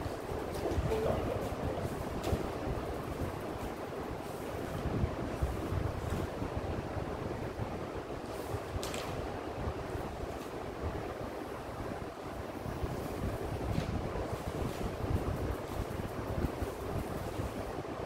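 Steady low rumbling noise, like air moving over the microphone, with a few faint clicks.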